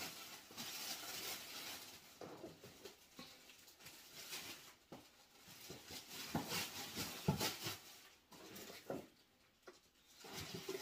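Faint rustling and scattered light knocks of home decor items being handled, moved and set down on a surface, with a few louder knocks in the second half.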